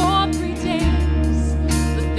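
Live worship band music: a woman singing lead briefly at the start over sustained low bass notes and acoustic guitar, with two cymbal crashes, one at the start and one near the end.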